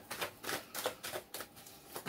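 Tarot cards being shuffled by hand: a faint series of quick, uneven card flicks and snaps.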